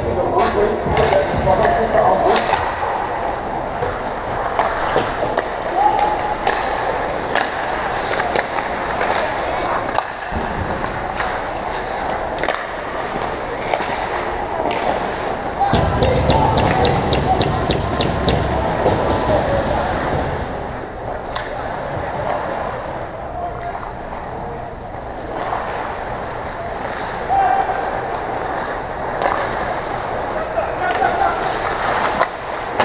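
Ice hockey play on a rink: skate blades scraping and carving the ice, with frequent sharp clicks and knocks of sticks and puck, and players shouting. A low rumble comes in for a few seconds about halfway through, as play crowds the net.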